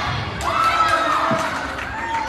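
Spectators in a school gym shouting and cheering, growing louder about half a second in.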